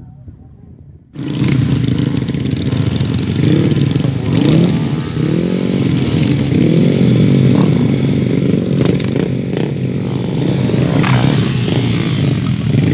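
Trail motorcycle engine starting loud about a second in, then revving up and down repeatedly under throttle.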